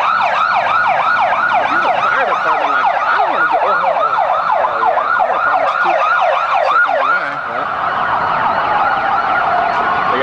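Emergency vehicle siren on a fast yelp, about three rising-and-falling sweeps a second, switching to a slow wail about seven seconds in.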